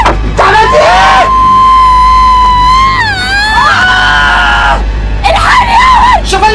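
A person screaming in panic: a short cry, then one long high scream held steady, dropping in pitch about three seconds in and held again, with more shouting near the end. Music plays underneath.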